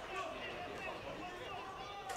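Faint football-stadium ambience: distant voices of players and a sparse crowd, with no single loud event.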